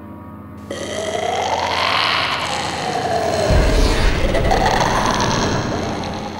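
Horror-trailer sound effect. After a faint low drone, a loud rushing, growling swell comes in about a second in, its pitch sweeping up and down, and a deep rumble joins about halfway through before it fades near the end.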